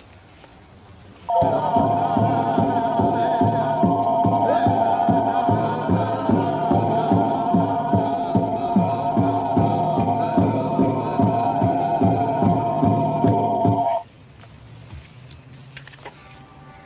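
The noise of a strange artifact in a TV drama, a sound effect: two steady high tones held over a fast, even low pulsing. It starts about a second in and cuts off suddenly near the end.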